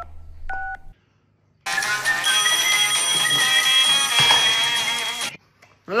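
Two short electronic beeps from a smartphone as a call is placed, then, after a short pause, about three and a half seconds of music while the call goes unanswered.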